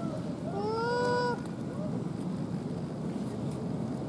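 A young macaque's whining cry: one long arched call of about a second near the start, with a few short squeaks around it, then only a steady background hiss.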